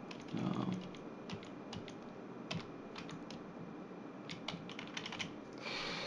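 Computer keyboard typing: a scattered run of quiet, separate keystrokes as a short name is entered into a text field.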